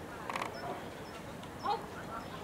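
A dog gives two short vocal sounds, a weaker one just after the start and a louder one near the end, over a low murmur of distant voices.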